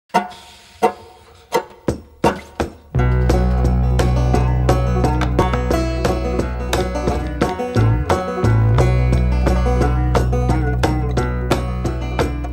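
Instrumental opening of a banjo-led folk song: plucked banjo and tenor guitar with mallet percussion. For the first three seconds it is sparse, sharp plucked hits; then a full groove of quick picking over held low bass notes comes in.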